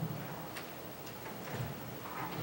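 Quiet hall with a low murmur and two faint sharp clicks about a second apart.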